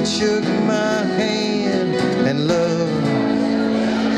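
Live acoustic folk band playing: strummed acoustic guitars over upright bass and cajón, with a held melody line that wavers in pitch.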